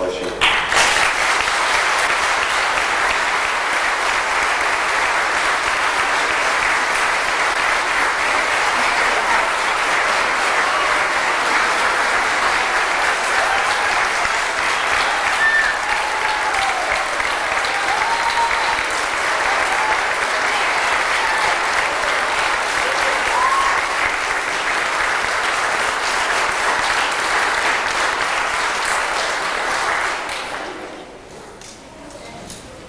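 Church congregation applauding steadily for a long stretch, with a few voices calling out partway through.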